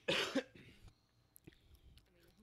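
A man's single short cough in the first half second, followed by a few faint clicks.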